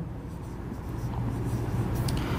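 Marker pen writing on a whiteboard, over a low steady hum.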